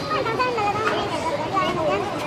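Several overlapping voices of passers-by talking and calling out at once, some of them high-pitched.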